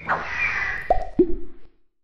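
Cartoon sound effects on an animated logo: a swish, then two quick plopping pops about a second in, the second lower in pitch than the first. The sound stops shortly before the end.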